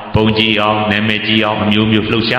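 Buddhist monk's voice intoning in a chant-like way, with long held notes that slide down in pitch.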